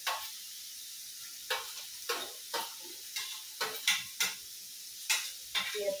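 Food frying in a pan with a steady sizzle while a metal spoon stirs it, knocking and scraping against the pan about ten times at uneven intervals.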